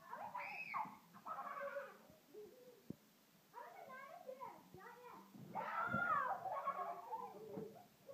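Young children's high-pitched voices, babbling and squealing without clear words, in several short bursts, loudest about six seconds in.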